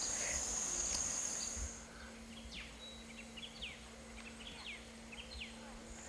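A faint outdoor insect chorus: a steady, high-pitched buzz that cuts off after about a second and a half. Several short, falling chirps follow.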